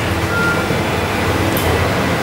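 Room tone in a pause between speech: a steady low hum under an even hiss, with no distinct event.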